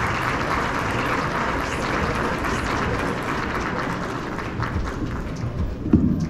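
Audience applauding, steady and then thinning out near the end.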